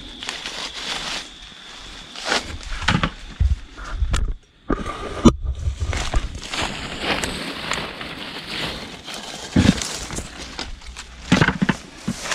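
Leafy undergrowth and dry leaves rustling and crackling as hands push through the brush and pick cacao pods up from the ground, with irregular sharp crackles and a few low bumps. The sound drops out briefly about four seconds in.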